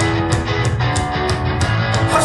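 Rock music: guitar chords held over a steady beat of sharp drum or cymbal strikes, about three a second, with no singing.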